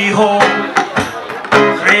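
An acoustic reggae band playing live: a strummed acoustic guitar with hand-drum percussion and a sung vocal line, the next sung phrase beginning near the end.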